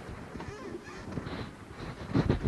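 Concert-hall noise between two pieces of an old live recital recording, with no music playing: a low, even background of audience stirring and stage movement over tape hiss.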